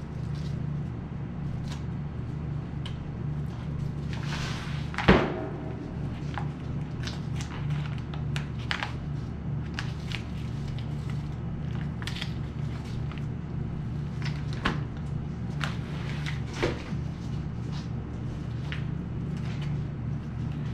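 Boning knife working meat off an elk's femur: scattered short clicks and scrapes over a steady low hum, with one sharp knock about five seconds in.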